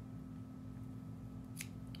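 Scissors snipping the trimmed ends off a jig's skirt, a short sharp snip about a second and a half in and a fainter one just after, over a steady low room hum.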